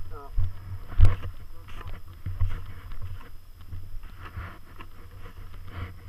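Footsteps crunching and sinking in deep powder snow, uneven and a few a second, with low thumps and a sharp knock about a second in from the camera being jostled.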